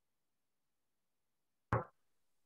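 Near silence, then a single short, sharp knock near the end, like a light bump against the work table.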